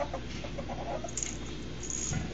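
Ferret dooking: a quick run of soft clucking chuckles, the sound an excited ferret makes while play-fighting.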